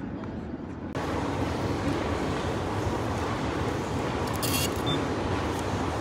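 About a second of quiet city ambience, then a steady loud rumble of a metro train running underground, with a brief high screech about four and a half seconds in.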